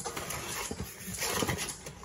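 Cardboard box and plastic packaging being handled, rustling with a few light knocks as loose toy parts are put back into the box.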